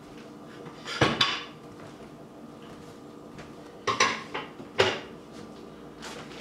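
Cooking spoon clinking against a pan: a sharp clatter about a second in, then a few quick clinks around four to five seconds in.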